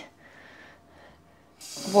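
Faint soft sounds of wet wool fibre being lifted, then about one and a half seconds in a kitchen tap starts running water into an empty stainless steel tray.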